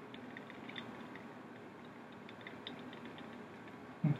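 Quiet room tone with faint scattered light clicks from handling a small plastic bobblehead figure.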